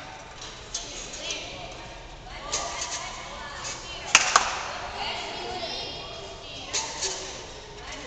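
Two sharp knocks from a gymnast's contact with the uneven bars, a quarter of a second apart about four seconds in, over voices in the hall.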